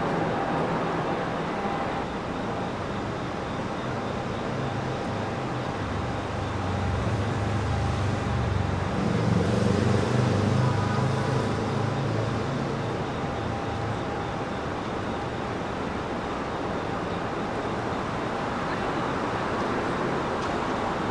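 City street traffic noise: a steady hum of passing vehicles, with a heavier vehicle rumbling past and loudest about ten seconds in.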